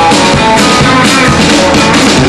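Live rock band playing: an acoustic guitar strummed together with electric guitar and drums, at a steady beat.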